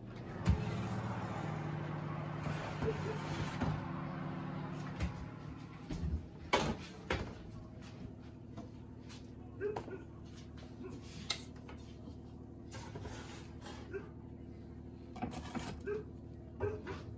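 Kitchen handling sounds over a steady low hum: a few separate sharp knocks and clatters of a metal baking tray on a gas hob's grates and a pizza being slid off it onto a plate.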